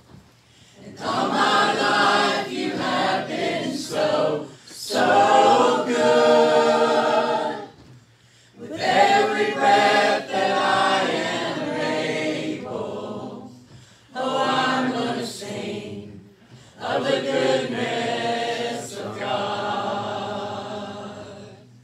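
A church praise team singing a gospel song together in harmony, a cappella, in phrases a few seconds long with short breaks between them.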